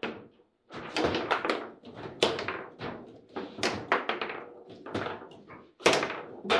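Foosball table in play: the hard ball is struck by the rod-mounted plastic figures and rods knock against the table, making a run of sharp knocks and thunks at irregular intervals, with a loud bang just before the end.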